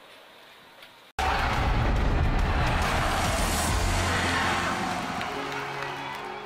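A faint stretch of background ambience cuts out, and about a second in a loud outro sting hits: a sudden deep boom with a whoosh that fades slowly. Sustained music chords come in near the end.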